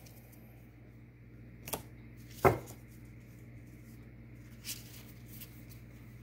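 A steady low hum with a few faint, sharp clicks and taps, the loudest about two and a half seconds in.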